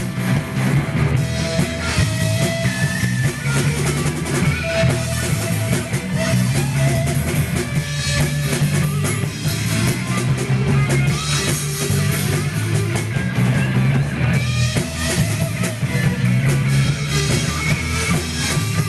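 Live rock trio playing an instrumental passage without vocals: electric guitar (a Gibson Les Paul through a Marshall amp), bass guitar and a Pearl drum kit, loud and steady.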